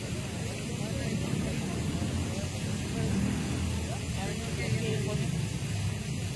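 Outdoor city ambience: a steady low rumble with faint, indistinct voices of people talking in the distance.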